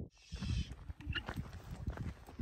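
Scattered knocks, rustles and clicks of pack-camel gear being handled as the woven saddle baskets and loads come off the kneeling camels, after a brief gap at the start.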